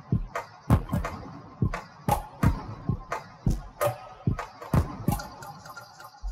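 Breakbeat drum pattern built from found-sound samples: low thuds and sharp, bright clicks in a steady, fast rhythm.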